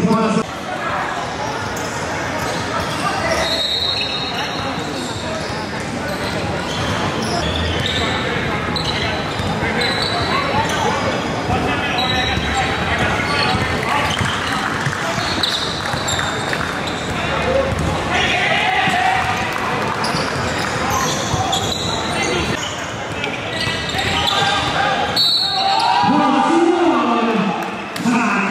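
Live gym sound of a basketball game: a basketball bouncing on the hardwood court amid indistinct voices of players and spectators, echoing in a large hall.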